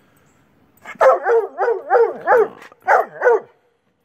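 A tricolour coonhound baying in a run of wavering, rising-and-falling howled notes. It starts about a second in, pauses briefly, then ends with a short second bout. It is demanding to be fed.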